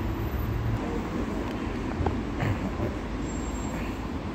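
Street traffic noise: a steady low rumble with a couple of faint knocks in the middle.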